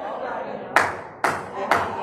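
A man clapping his hands three times, sharp single claps about half a second apart starting a little under a second in, each followed by a short room echo.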